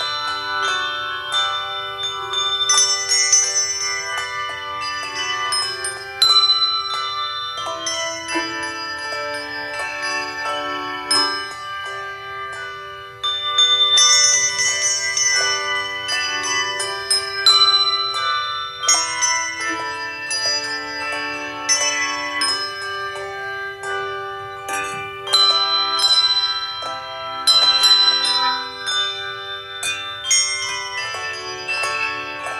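A handbell choir ringing a hymn tune: many bells struck together in changing chords, each note ringing on after it is struck.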